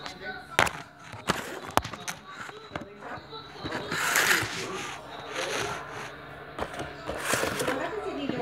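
Partly filled plastic water bottle knocking down onto a hard kitchen countertop as it is flipped: a few sharp knocks in the first two seconds, then softer swishing and sliding handling noise.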